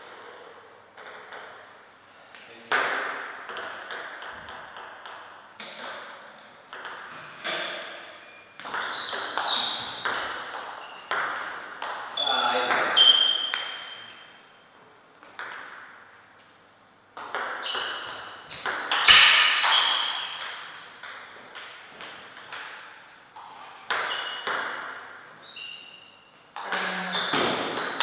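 Table tennis ball hit back and forth by paddles and bouncing on the table: rapid runs of sharp, ringing clicks in rallies, with short pauses between the points.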